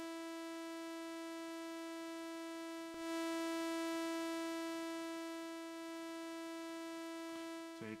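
AudioRealism ReDominator software synthesizer holding one bright, buzzy note at a steady pitch, its volume shaped by the envelope. About three seconds in the note restarts with a faint click and swells up. It then sinks over about two seconds and steps back up a little to a steady held level, because the envelope's L2 level is set below the sustain level. The note fades just before the end.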